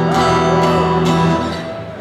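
A Gibson acoustic guitar, amplified, strummed once on an E minor chord and left ringing, fading away over the second half.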